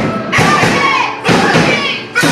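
Live punk rock band breaking off its steady playing into two loud accented hits about a second apart, each with a shouted vocal over it.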